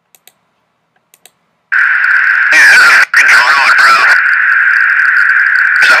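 Military jet cockpit intercom audio: a steady, narrow-band radio hiss cuts in abruptly about two seconds in, after a few faint clicks, with tinny aircrew voices over it.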